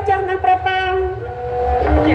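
A woman singing long held notes through the stage microphone in Khmer lakhon basak opera style, her melody stepping up and down in pitch a few times.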